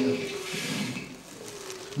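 A faint, low voice trailing off and fading into a quiet pause, with a brief faint vocal sound near the end.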